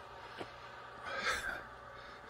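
A man's audible breath between phrases: a short, soft exhale about a second in, with a small mouth click just before it.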